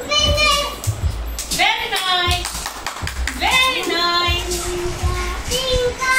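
A young child singing without clear words, the high voice gliding and then holding long notes, with low thuds and rumble underneath.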